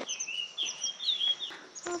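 Small birds calling: short, high notes that sweep downward, repeated several times a second, with a wavering high note among them.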